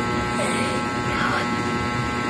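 A steady electrical buzzing hum with many even overtones, running unchanged under a faint murmur of voice.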